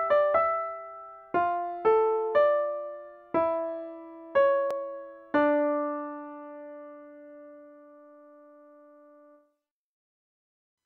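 Piano playback of a two-voice counterpoint exercise, a melody moving over a slower cantus firmus, with notes struck roughly every half second to a second. About five seconds in the final note is struck and held, ringing until it fades away.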